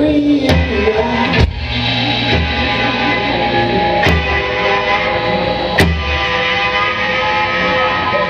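Live rock band playing: electric guitars and bass ringing out sustained chords, punctuated by a few sharp drum hits.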